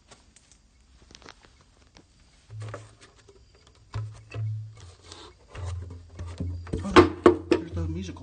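Wooden boxes being handled by hand: a run of clacks and knocks that grows busier and louder through the second half, loudest about a second before the end, over a low hum that comes and goes.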